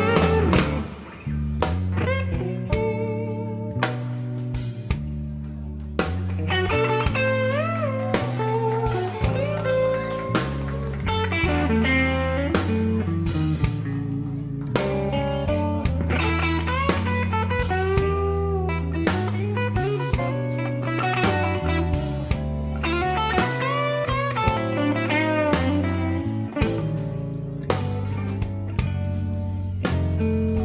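Slow blues instrumental passage: a lead electric guitar plays notes that bend and waver in pitch, over bass and drums.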